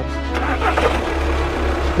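Volkswagen Passat's TDI common-rail diesel engine starting and running, with background music.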